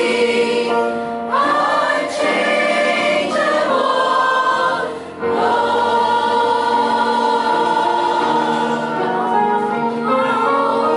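Mixed choir of men and women singing a hymn together, with a short pause between phrases about five seconds in.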